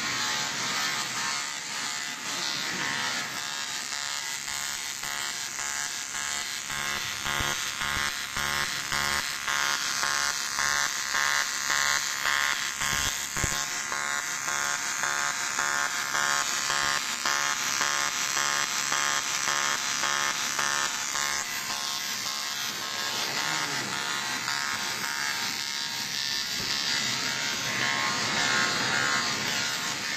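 Automatic TIG welding arc running on an aluminum cylinder's circular end-cap seam: a steady electric buzz, with a fast, even pulsing through the middle.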